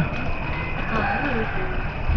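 A person's voice, quiet and murmured, with a few short hums, over a steady background hiss.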